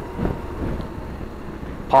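BMW R1200GSA motorcycle's boxer-twin engine running at a steady cruise, mixed with wind noise on the microphone.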